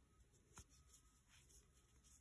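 Near silence, with faint handling sounds of a 6 mm crochet hook drawing cotton t-shirt yarn through stitches and a couple of soft clicks.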